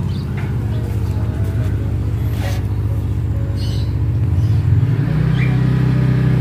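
A motor running with a steady low hum, its pitch shifting about five seconds in.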